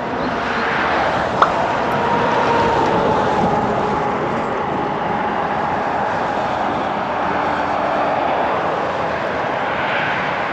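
Steady engine drone with a faint whine that slowly falls in pitch, and one sharp click about a second and a half in.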